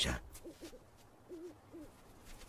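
Owl hooting faintly at night: four short low hoots in two pairs, the later pair wavering slightly in pitch.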